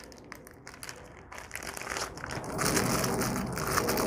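Clear plastic bag and plastic wrap crinkling as hands pull a wrapped item out: faint scattered crackles at first, growing into steady louder crinkling about halfway through.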